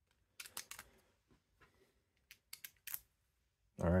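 Light clicks of 3D-printed plastic cams being fitted by hand onto a keyed cam stack: a quick cluster about half a second in and another around two and a half to three seconds in.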